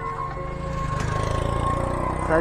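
Motorcycle engine idling with a steady low beat.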